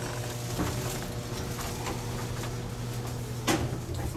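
Steady low hum of a hotel elevator car in motion, with a short knock about three and a half seconds in.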